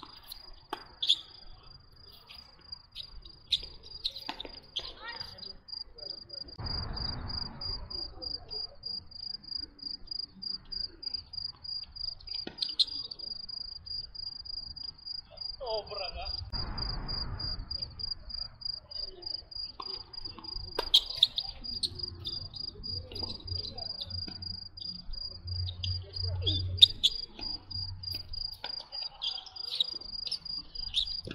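A cricket chirping in a fast, even, high-pitched pulsing trill without a break. Sharp knocks of tennis balls struck by rackets come now and then, the loudest near the end.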